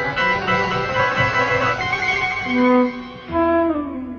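1970s horror film score: a dense, sustained chord led by plucked strings, thinning out near the end as a new low note comes in.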